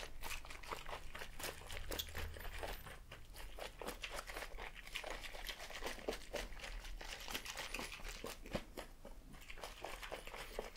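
A plastic cup sealed with a snap-on lid being shaken by hand with a cocktail mixture and no ice inside: the liquid sloshes while the plastic gives a fast, irregular run of small clicks and crackles.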